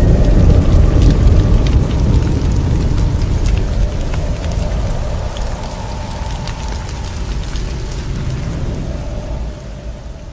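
Cinematic title-card sound effect: a deep rumble with scattered crackles, slowly fading away.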